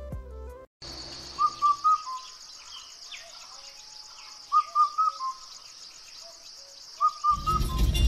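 Birdsong ambience over a steady high hiss: a bird gives short runs of three or four quick chirps about every three seconds. It starts after a brief silent cut about a second in, and louder voices and music come in near the end.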